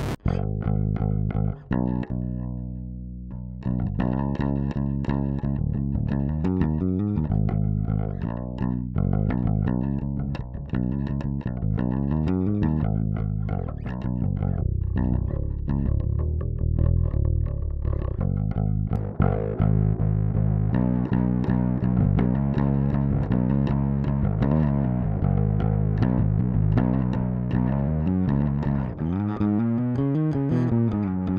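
Electric bass played through an EarthQuaker Devices The Warden optical compressor: a run of even, clean notes and slides. About two-thirds of the way through, the Radial Bass Bone OD's overdrive is switched in and the tone turns gritty and brighter.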